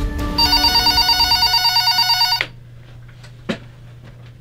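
Desk landline telephone ringing with a rapid electronic trill, cut off suddenly about two and a half seconds in as it is answered. A single click follows about a second later.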